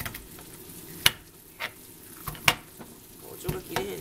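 Kitchen knife chopping a vegetable on a plastic cutting board: five irregular sharp knocks of the blade hitting the board, the loudest about a second in and about two and a half seconds in. The knife is described as not cutting well.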